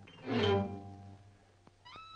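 Orchestral cartoon score: a single pitched note swells and then fades away. Near the end there are a couple of faint ticks and a quick rising slide.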